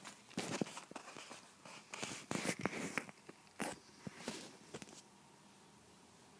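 Fabric rustling and scratching with sharp clicks, in irregular bursts, as a small mouse scrambles under a cloth pillow; it stops abruptly about five seconds in.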